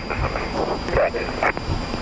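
Indistinct, broken radio speech in a Boeing 737 cockpit, over the steady background noise of the flight deck while the airliner taxis.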